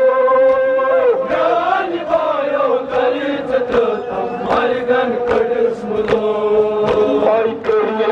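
A male voice chanting a Kashmiri noha (mourning lament) in long held notes, with a crowd of men beating their chests in time, about two strikes a second.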